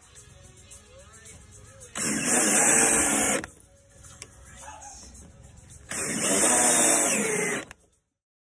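A power drill driving screws in two runs of about a second and a half each, the motor's whine starting and stopping sharply.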